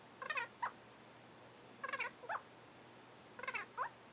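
A man's voice sped up by fast-forwarding, asking whether the first letter is C, D, E: three short, high-pitched squeaky questions about a second and a half apart.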